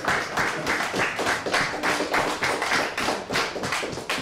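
A small group of people clapping by hand, the individual claps distinct and irregular.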